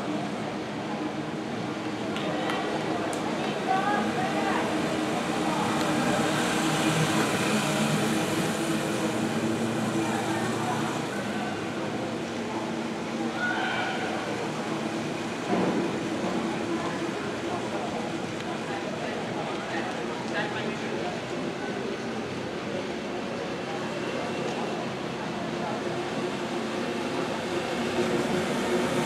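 Background voices of people talking in a velodrome over a steady low hum, consistent with the keirin pacing motorbike's engine running at an even speed ahead of the riders.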